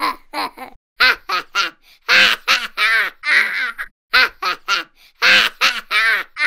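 A baby laughing: runs of short, high-pitched giggles and squeals, broken by a few brief silent gaps.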